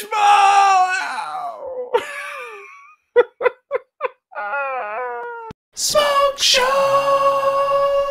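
A man's voice: a drawn-out cheer, short bursts of laughter about three seconds in, a wavering cry, then a long howl held on one pitch from about six seconds in.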